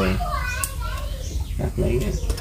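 Voices: a high-pitched child's voice calls out about half a second in, with adult talk near the end. A steady low rumble runs underneath.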